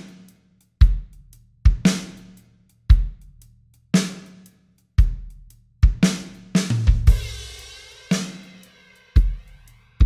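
A recorded drum kit playing a slow groove of kick, snare and hi-hat hits about once a second, with a cymbal crash wash about seven seconds in. The drum bus plays dry, with the TAIP tape-saturation plugin bypassed for comparison.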